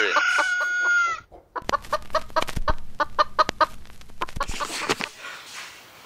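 Chicken sounds: a held crow-like call for about a second, then a run of quick clucks, about four a second, that die away near the end.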